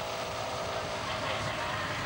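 Steady low engine hum with road and tyre noise from a motor vehicle moving alongside a bicycle race peloton.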